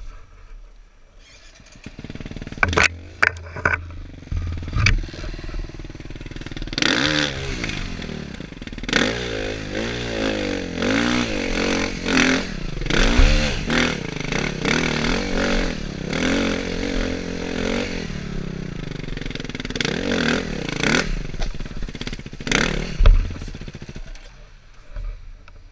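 Dirt bike engine catching about two seconds in, with a few sharp knocks just after, then revving up and down over and over as the bike is ridden over rough ground.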